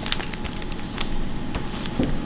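Marinated Brussels sprouts and butternut squash cubes tumbling out of a plastic zip-top bag onto a sheet pan, heard as a handful of scattered light taps as the pieces land.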